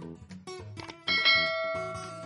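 A bell ding sound effect for a subscribe-button animation, ringing out suddenly about a second in and slowly fading, over background music.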